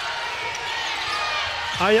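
Steady arena crowd noise, many voices shouting together, with a basketball bouncing on the hardwood court during live play.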